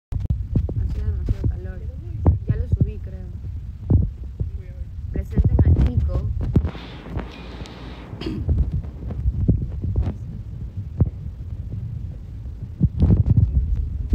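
A phone microphone covered and handled by a hand: a dull low rumble with repeated knocks and rubbing, while voices come through only faintly and muffled.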